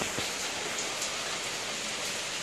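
Steady rain falling: an even hiss, with a couple of faint ticks.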